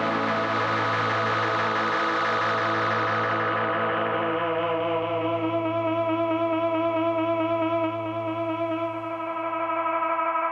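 Rickenbacker-style electric guitar played through effects and a Fender amp: sustained chords ringing with echo and a wavering modulation. The bright top of the sound fades about three to four seconds in, and a low held note drops out near the end.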